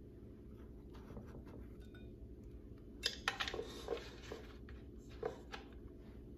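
Soft kitchen handling sounds as a dough piece is coated and set into a metal tube pan: a few faint clicks, then a short cluster of light knocks and scraping about three seconds in, and one more knock near the end.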